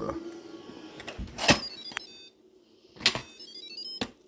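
Two short electronic chimes about a second and a half apart, each a sharp click followed by a quick run of tones stepping down in pitch.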